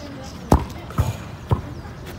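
A soccer ball thudding three times, about half a second apart, the first thud the loudest.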